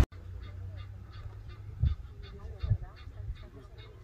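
Birds calling in the background: short high chirps repeating about two or three times a second, with lower warbling calls, over a steady low hum. Two brief soft low thumps come near the middle.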